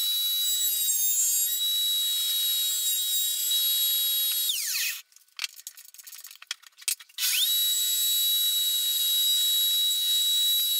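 Table-mounted router running steadily at full speed while the bit trims waste from a guitar neck tenon's cheeks held in a jig. It cuts off about four and a half seconds in and winds down. A few clicks and rattles follow as the bit height is cranked up through the table, then the router starts again and runs up to speed about seven seconds in.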